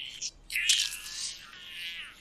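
High-pitched buzzing sound effect from the anime's soundtrack. A short burst comes first, then the buzz swells about half a second in and fades toward the end.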